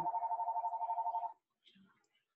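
A flat, buzzing two-pitch tone with a rapid flutter, cutting off sharply about a second and a half in: the speaker's 'um' frozen and stretched into a robotic drone by the video call's audio, a connection glitch.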